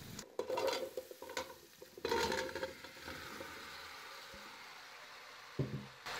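Chopped onions frying in oil in a stainless-steel pot, sizzling, with a metal spoon clicking and scraping against the pot in the first couple of seconds as ground spices go in. After that the sizzle goes on steadily and more faintly.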